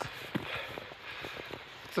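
A hiker's footsteps on a wet forest track, an irregular run of soft steps over a steady background rustle while walking with the camera in hand.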